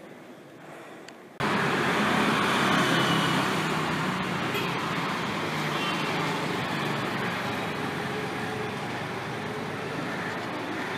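Steady street traffic noise, an even rumble and hiss that starts abruptly about a second and a half in and eases slightly toward the end.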